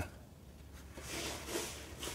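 Faint trickle and drip of automatic transmission fluid running off the edge of a half-lowered transmission pan.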